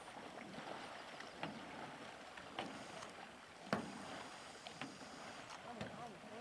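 Faint lakeside ambience of soft water sounds, broken by a few light knocks, the sharpest a little past halfway.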